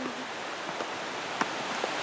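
Steady rush of a creek running down cascades, with a few faint ticks over it.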